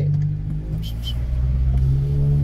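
Car engine pulling away from a stop and accelerating, heard from inside the cabin as a steady low hum.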